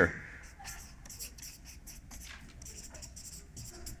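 Felt-tip marker writing on flip-chart paper: a run of short, hissy strokes as an arrow and two words are written.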